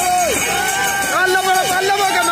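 Many men's voices chanting and shouting together in overlapping calls that rise and fall in pitch, the crew of a Kerala snake boat rowing at race pace.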